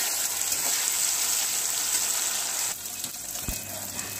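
Steady sizzling hiss of food cooking on the stove. It eases a little about three seconds in, and a single low thump follows shortly after.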